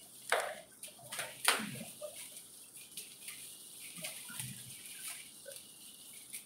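Shiny gift wrapping paper rustling and crinkling as a present is unwrapped by hand, in a few sharp bursts early on and then softer, sparser rustles.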